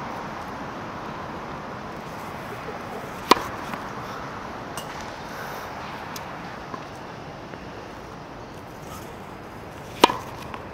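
A tennis ball bouncing on a hard court: a few short, sharp knocks, the loudest about three seconds in, over a steady outdoor background hiss.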